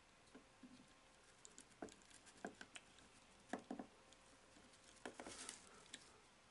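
Faint, scattered clicks and taps of a plastic action figure being handled and pressed into the grip of a clear plastic display-stand arm, with small clusters of clicks a few seconds in and near the end.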